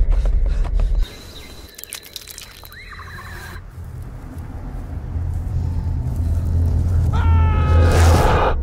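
Horror-film soundtrack: a loud low rumble that cuts off suddenly about a second in, then a low drone that swells steadily, with a brief high-pitched shriek near the end.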